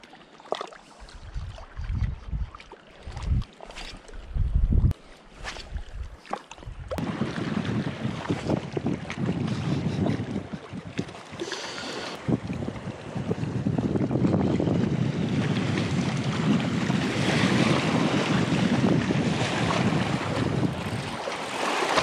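Wind buffeting the microphone in low gusts for the first several seconds. From about seven seconds in, a steady rush of wind and small waves washes against the rocks of the shoreline.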